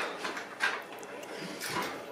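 A few soft knocks and a scrape as a pair of adjustable block dumbbells are lifted off the floor, with knocks near the start and about half a second in, and a longer rustling scrape near the end.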